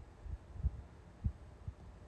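Four soft, low thumps on the microphone at uneven intervals, the two loudest near the middle, over quiet room tone.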